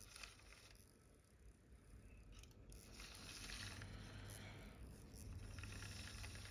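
Faint low hum from the small electric motor of a Lima OO-gauge GWR 94xx pannier tank model locomotive creeping along the track at very slow speed, growing a little louder about halfway through.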